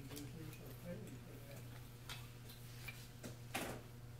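Paper being handled: scattered small clicks and rustles of sheets, with one louder rustle near the end, over a steady low hum.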